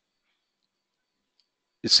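Near silence with a faint, brief click about one and a half seconds in, then a man's voice starts speaking at the very end.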